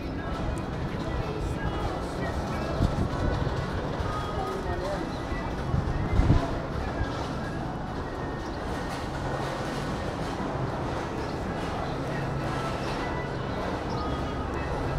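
Pedestrian-street ambience: a steady murmur of passers-by's voices with music playing in the background, and a couple of low thumps about three and six seconds in.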